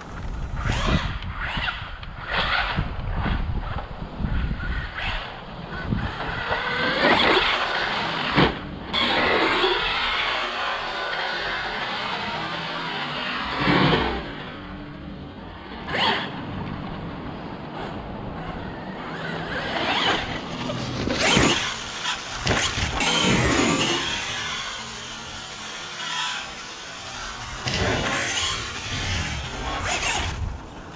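Background music over a large-scale electric RC desert truck (Losi Super Baja Rey 2.0) being driven hard. Its brushless motor whines up and down in irregular surges, with bursts of tyre and dirt noise.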